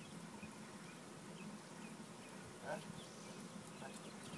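Quiet backyard ambience: a steady low hum under scattered faint, short high chirps. A single short spoken 'huh?' comes near the end.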